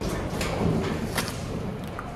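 Rummaging in a metal locker: a few short knocks and clicks over the hiss of room noise.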